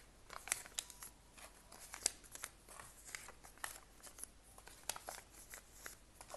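Paper sticky notes being peeled up and gathered off a tabletop: an irregular run of faint, crisp crackles and rustles.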